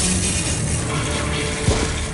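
Toilet flushing: a steady rush of water, with a short low knock about 1.7 s in, over background music.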